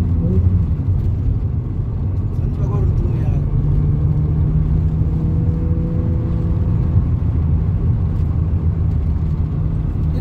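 Volkswagen car heard from inside the cabin while driving at a steady speed: a steady low engine and road drone.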